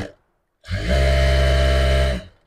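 Jack F4 industrial lockstitch sewing machine running at a steady speed, a loud even machine hum at one pitch that starts abruptly about half a second in and keeps on to the end.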